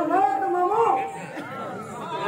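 Several men's voices, rising and falling in pitch and breaking up like chatter or calling, right after a long held sung note of the kirtan stops. The voices grow quieter about a second in.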